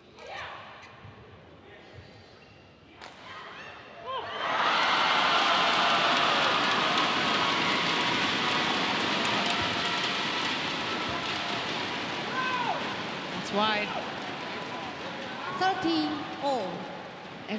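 Arena crowd noise that swells suddenly about four seconds in and stays loud, with a few short squeaks near the end.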